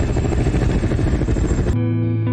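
Film soundtrack: a deep, dense wash of noise, with something engine-like in it, cuts off suddenly near the end and gives way to steady, held musical notes.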